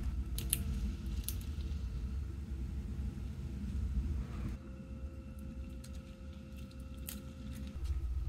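Faint handling sounds as adhesive tape is pressed along the edge of an iPhone battery cell with a thin metal pick: a few light clicks over a low steady hum.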